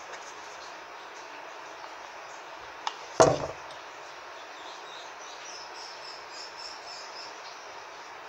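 A light click and then a single sharp knock about three seconds in, from the glass vase being handled and bumped as ribbon is pressed around its base, over a steady low hiss.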